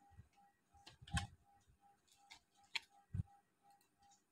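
Faint, scattered clicks and knocks at a computer desk, the strongest about a second in. Behind them runs a faint regular tick, about three a second.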